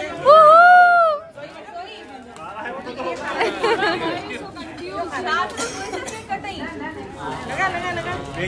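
A loud, high, drawn-out cheer that rises and falls over about a second, then a group of people chattering over one another.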